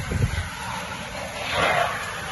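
Gusty wind from a small whirlwind rushing past, with low thumps of wind buffeting the microphone near the start and a louder rush about one and a half seconds in.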